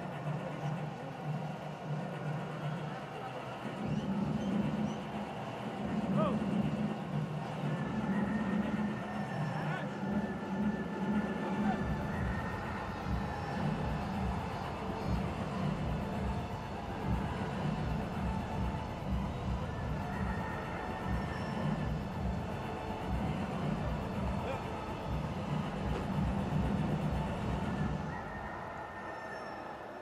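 Music, with a regular low beat coming in about twelve seconds in; it fades down near the end.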